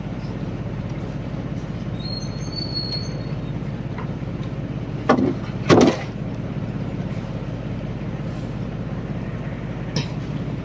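Blocks of ice set down heavily on a wooden boat deck: two loud thuds a little past halfway, the second one longer. A steady engine drone runs underneath.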